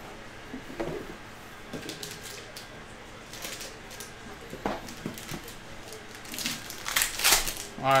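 Handling of a rigid cardboard trading-card box, with light scrapes and taps as the lid and foam insert are handled, then a foil card pack crinkling loudly near the end as it is pulled out.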